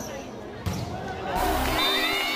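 A volleyball being hit during a rally, one sharp smack about two-thirds of a second in, over crowd voices and background music with deep bass notes.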